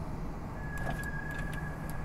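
Steady low rumble of a car heard from inside the cabin. A faint thin high whine runs through the middle, and there are a few light ticks.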